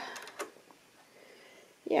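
Quiet room tone with a few faint, light clicks in the first half second, then a spoken word at the very end.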